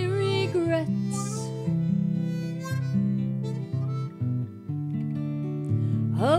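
Harmonica playing an instrumental break over acoustic guitar accompaniment. It holds one wavering note at the start, then moves through held chords.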